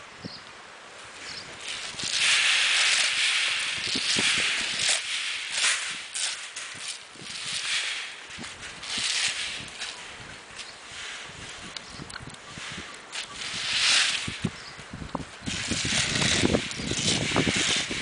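Coffee beans being spread and raked across raised mesh drying beds by hand and with a wooden scraper: a dry rustling hiss that comes in repeated swells, with sharper crackling near the end.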